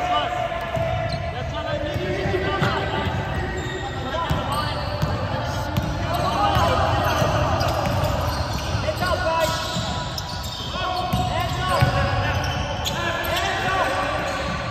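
Game sounds from a basketball court: the ball bouncing on the hardwood floor, sneakers squeaking in short chirps, and players' voices calling out.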